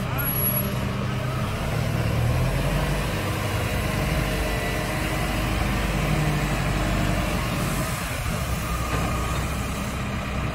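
Telehandler engine running steadily as the machine drives and turns, a continuous low hum.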